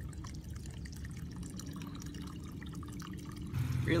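Water trickling and dripping in a small koi pond, with fine little drips and splashes over a steady wash.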